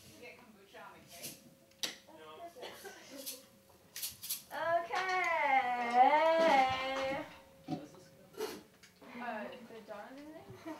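Chatter of several people in a small room, with one voice holding a long, wavering drawn-out note for about two and a half seconds midway. Scattered light knocks and clicks.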